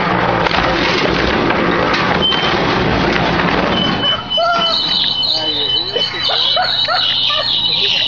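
Concrete mixer running with a steady hum under loud, dense shouting as the riders are thrown off its turning drum. About four seconds in the noise drops away, leaving excited voices and a steady high-pitched tone.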